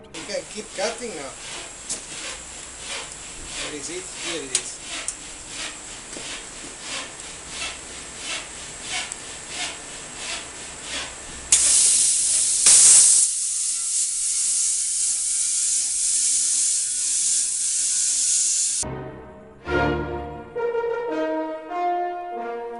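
Cheap Chinese CUT40 plasma cutter cutting into a steel argon bottle: a loud steady hiss of arc and air that starts about halfway through, runs about seven seconds and cuts off suddenly. Before it, a run of soft regular ticks, two or three a second.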